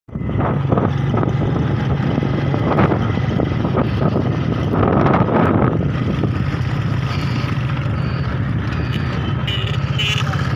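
Motorcycle engine running steadily at road speed, with wind rushing and buffeting over the microphone, heaviest in the first half.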